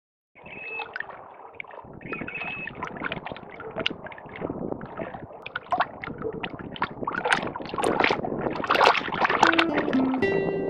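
Small waves lapping and splashing at a lake shore: an irregular patter of little splashes that grows louder toward the end. Two short high tones come in the first few seconds.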